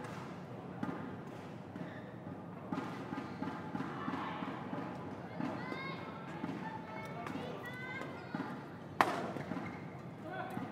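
Badminton doubles rally: rackets strike the shuttlecock with short sharp hits and shoes squeak on the court mat, over crowd chatter. A loud single hit comes about nine seconds in.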